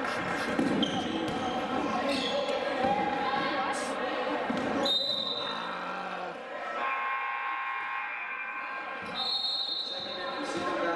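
Basketball game in a gymnasium: the ball bouncing on the hardwood with sneaker squeaks and players' voices echoing in the hall. Two short high referee's whistle blasts sound about halfway through and near the end.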